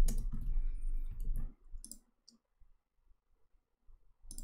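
Clicks from a computer keyboard and mouse. A handful of sharp, separate clicks sit over a low background rumble for about the first second and a half, then the rumble drops away and only a few faint clicks follow.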